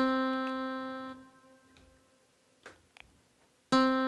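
A synthesized guitar note from TablEdit's playback, C on the first fret of the second string, sounded as the note is entered: it starts at once, fades and is cut off after about a second. After a gap with two faint clicks, the same note sounds again near the end.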